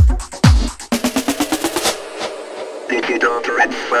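House music: the four-on-the-floor kick drum drops out about a second in, a quick rising drum roll follows, and a short spoken vocal sample ('yeah') comes near the end.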